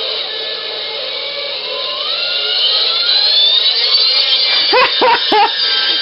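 Music from an iPod fed through a voice changer IC module and played out of its small speaker, processed into a distorted electronic sound with steady high tones. A pitch rises steadily from about two to four seconds in, and short wavering pitched sounds follow near the end.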